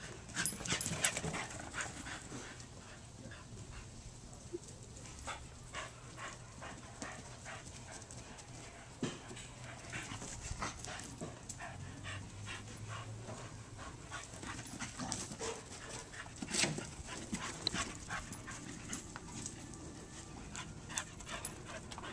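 A dog panting in short, irregular breaths.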